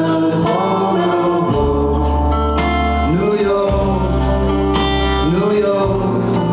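Live band playing a slow song, with sustained bass notes under keyboards and guitar, as a man and a woman sing the melody into microphones.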